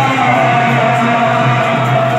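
Kirtan music played loud and steady: large two-headed barrel drums struck by hand under steady held notes.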